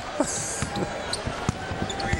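Basketball dribbled on a hardwood arena floor: a string of sharp bounces a fraction of a second apart, over a steady hum of arena crowd noise.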